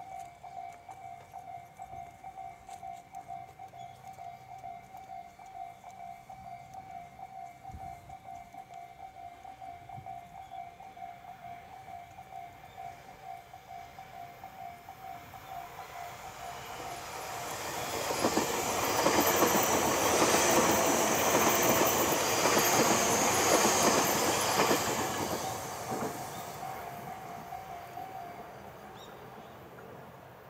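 Tobu 60000 series electric train passing at speed, its wheel and rail noise building from about halfway in, loudest for several seconds, then fading. Through it, a level-crossing bell dings at a steady beat and stops a little after the train has gone by.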